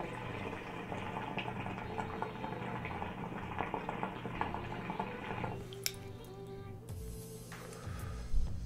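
Hookah water bubbling steadily as smoke is drawn through the hose for about five and a half seconds, then stopping when the draw ends. A short breathy exhale of the smoke follows near the end.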